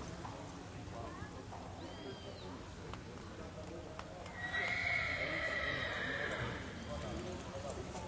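A horse whinnying: one long, high call about four and a half seconds in, lasting a couple of seconds and falling slowly in pitch.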